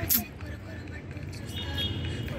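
Outdoor city background: a steady low rumble of distant traffic with faint voices, and a sharp click just after the start.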